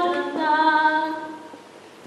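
A woman singing unaccompanied, holding the last note of a phrase, which fades out about a second and a half in.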